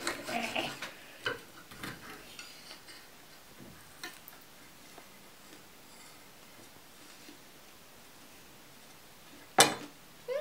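Knife and fork clinking and scraping on a plate while cutting fried potato cakes, for the first couple of seconds. Then mostly quiet, with a few faint clicks, and one sharp click near the end.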